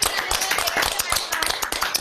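Several people clapping over a video call, a dense, irregular patter of claps, with voices underneath.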